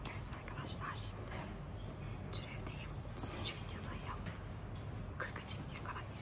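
A young woman whispering close to the microphone in short bursts of soft, hissy syllables, over a steady low hum.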